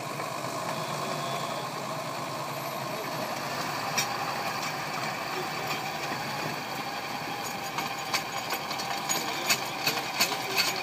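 Tractor engine running steadily under load while it drives a Selvatici Bivanga 150.150 spading machine digging deep into the soil. Sharp clicks and knocks from the working machine come more and more often over the last few seconds.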